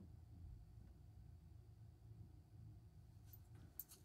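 Near silence: room tone with a faint low hum, and a couple of faint clicks near the end.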